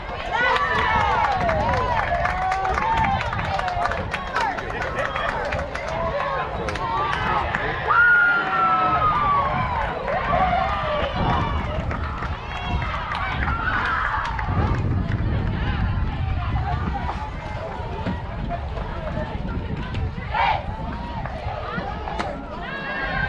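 Many overlapping voices shouting and calling out across a softball field, with a steady low rumble underneath.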